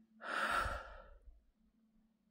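A man's sigh: one breathy exhale close to the microphone, lasting about a second, with a low rumble of breath hitting the mic, then fading.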